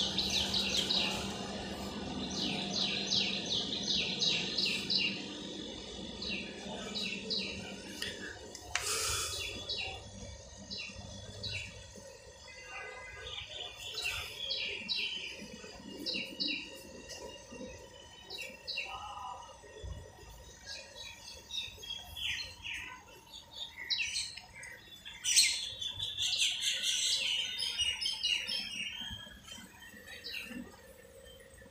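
Birds chirping, with many short high calls repeated through the whole stretch. A low steady hum sits underneath and stops about eight seconds in.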